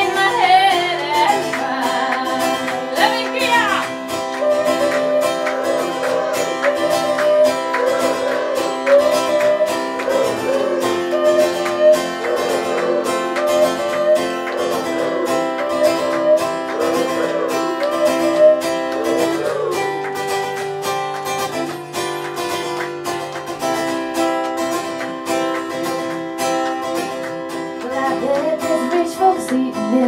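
Live acoustic guitar strummed steadily under a woman's singing, with a stretch in the second half where only the guitar plays.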